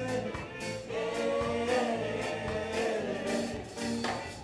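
Live African reggae band playing: drum kit, bass and electric guitar under a sung vocal line with several voices singing together.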